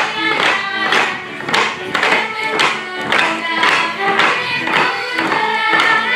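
A live folk band of fiddles and double bass playing a lively dance tune, with a steady beat of about two accents a second and short, bouncing bass notes.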